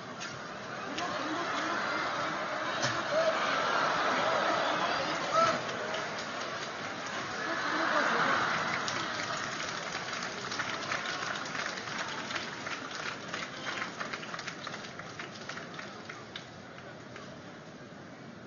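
Sumo arena crowd cheering and shouting through a bout, swelling twice, then scattered clapping that thins out and fades.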